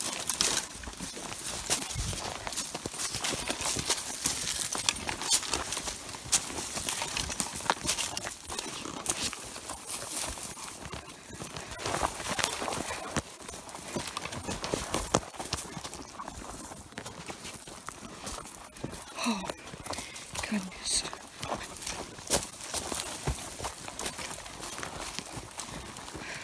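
Footsteps crunching through dry grass and brittle brush, with stems rustling and snapping underfoot in an uneven walking rhythm.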